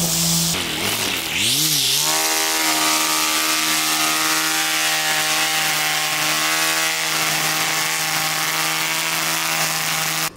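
Electric string trimmer running. Its motor whine dips in pitch twice about a second in and then holds steady, over the hiss of the spinning line cutting grass along a concrete path edge.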